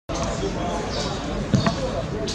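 A football struck once with a sharp thud about one and a half seconds in, heard over open-air pitch ambience with players calling out.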